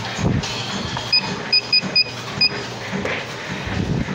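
Five short, identical electronic beeps, unevenly spaced, over background music.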